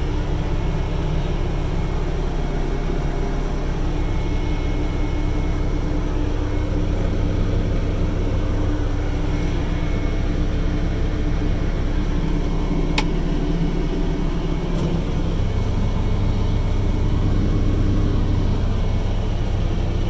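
Diesel engine of a Caterpillar 305D CR mini excavator idling steadily, heard from inside the closed cab with the air conditioning blowing. A sharp click comes about thirteen seconds in, and a fainter one about two seconds later.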